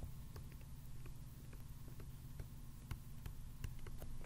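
Faint, irregular light clicks of a stylus tapping and writing on a tablet screen, over a steady low electrical hum.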